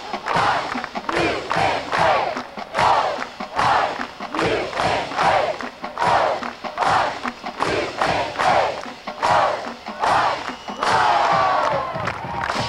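A marching band's members shouting a rhythmic chant in unison, short loud shouts roughly twice a second. Near the end a held brass note comes in.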